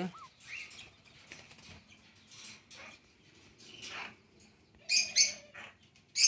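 Soft rustling of straw and feathers as a hand works under a rusty-margined guan sitting on its nest. About five seconds in comes a quick run of high, sharp bird chirps.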